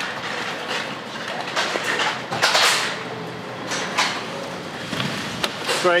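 A car driving up and stopping amid outdoor traffic noise, with a swell of louder noise about two and a half seconds in and several short knocks and clicks.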